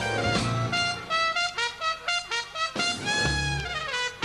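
Jazz horn line, brass sounding like a trumpet: a quick run of short, separate notes, over a bass line that drops out in the middle and comes back near the end.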